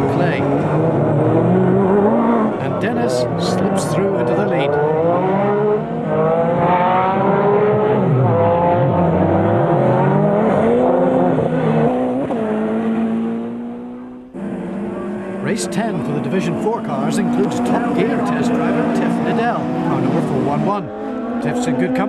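Rallycross race cars' engines revving hard, the pitch climbing and dropping repeatedly through gear changes and corners, with sharp crackles. About two-thirds of the way through, the sound breaks off briefly and resumes with a different group of cars revving.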